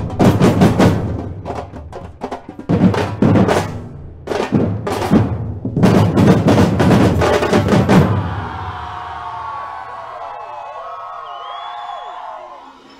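Carnival murga percussion: bass drum and snare drum playing loud, rhythmic hits. About eight seconds in, the drumming gives way to a softer passage of gliding tones.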